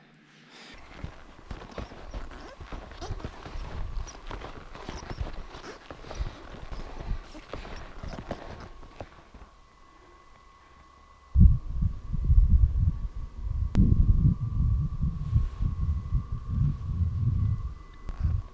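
Rhythmic crunching of ski-touring steps in snow. It is followed, about eleven seconds in, by a sudden loud low rumbling of wind buffeting the microphone, which runs on to the end.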